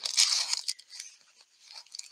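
Paper rustling as fingers dig a paper slip out of the centre of a ball of crochet thread, a crinkly handling noise with a few small clicks that dies away after about a second.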